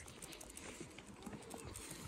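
Faint footsteps on pavement: light, irregular clicks over a low outdoor hum.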